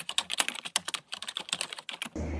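Rapid computer-keyboard typing clicks, roughly ten keystrokes a second, a sound effect that starts and stops abruptly.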